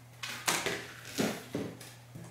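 Several sharp plastic clicks and knocks as the wand is unlatched and pulled off the hose handle of a Shark Rotator Powered Lift-Away canister vacuum. The vacuum's motor is not running.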